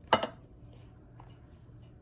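A single sharp clink of kitchenware, struck once just after the start. Then quiet room tone with a faint steady low hum.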